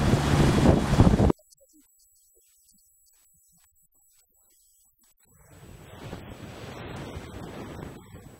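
Wind on the microphone and rushing water from a moving motorboat, loud for about a second and then cut off suddenly. A softer rush of churning wake water and wind comes back about five and a half seconds in.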